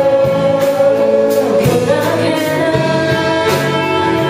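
Live rock band playing a song: a woman sings the lead vocal over electric bass, electric guitar, drums and keyboard, with a steady drum beat.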